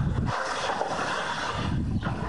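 Wind rushing over the microphone, a steady noisy haze with a low rumble, over outdoor street noise.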